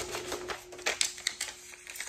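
Paper rustling and crinkling as a greeting card is handled and pushed into its paper envelope: a run of irregular sharp rustles and clicks.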